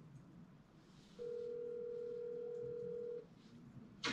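A telephone ringback tone heard through a phone's speaker: one steady ring about two seconds long, starting about a second in, as a call rings out.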